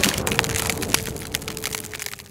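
Cracking and crumbling sound effect: a dense run of small cracks and falling debris that thins out and fades toward the end, over a faint steady tone.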